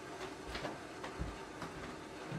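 A few soft footsteps on a floor, heard as low thumps about half a second and a second and a quarter in, with faint clicks around them.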